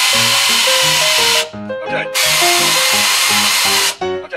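Pneumatic air ratchet running in two bursts, with a loud hiss of exhaust air, stopping about a second and a half in and starting again about two seconds in as it runs a fastener in. Background music with a slow stepping melody plays underneath.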